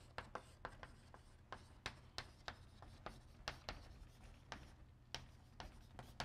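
Chalk writing on a blackboard: a string of faint, irregular taps and short scratches, two or three a second, as letters are chalked onto the board.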